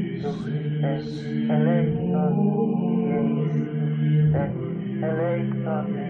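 Background chant music: a vocal chant over a steady, sustained low drone.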